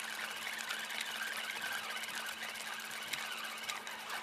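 Fishing reel being cranked to bring in a hooked fish: a steady, rapid mechanical ticking whirr of the reel's gears, with a faint steady hum underneath.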